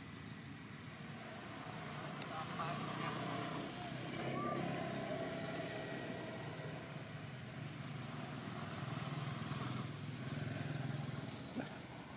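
Motor vehicle engine running steadily, growing louder about four seconds in and again near the end, as traffic goes by.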